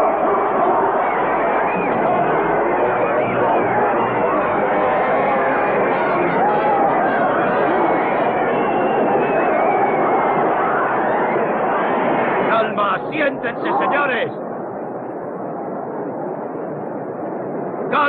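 A crowd of many voices shouting and screaming at once in panic, a dense, steady din for about twelve seconds. Then a few single shouts stand out, and the noise drops to a quieter hubbub for the last few seconds.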